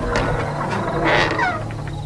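A house door creaking open on its hinges: a rasping, squeaky sound with a falling squeal about a second and a half in, over a low steady drone.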